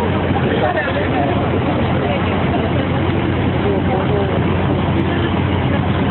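Busy street noise: many voices talking at once over a steady low engine hum from idling vehicles.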